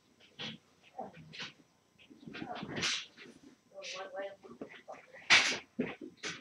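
A pet dog whimpering and yipping in short, broken calls, with muffled voices in the background and a louder sharp sound about five seconds in.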